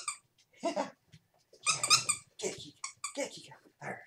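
Small dogs playing, with a sharp, high-pitched bark about two seconds in among other short dog sounds.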